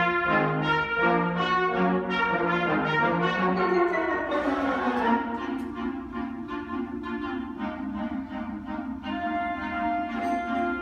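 High school concert band of woodwinds and brass playing. Moving notes in the first half give way about halfway through to a softer passage of held chords.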